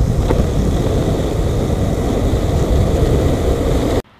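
Loud, steady rushing and rumbling noise of travel along a wet road, heaviest in the low rumble, starting and stopping abruptly with the shot.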